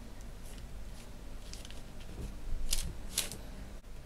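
Faint handling sounds of fingers pressing epoxy putty into the groove around a wooden bowl's rim, with two brief scratchy rustles close together just under three seconds in.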